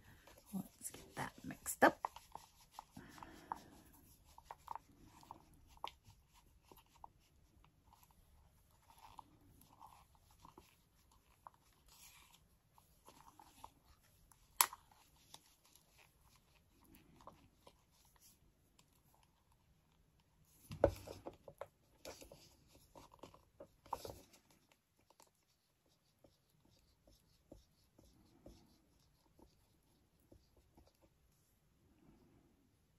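Two-part epoxy resin being stirred in a plastic cup with a wooden stick: quiet scraping and small clicks of the stick against the cup wall, with a few sharper knocks about 15, 21 and 24 seconds in.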